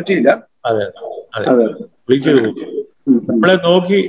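Men talking over a video-call link in short phrases with brief pauses between them.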